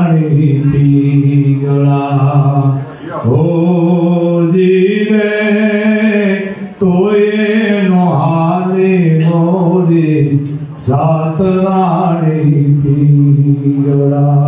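A man chanting solo into a microphone: long held notes that slide up and down in pitch, in four phrases of a few seconds each with short breaths between.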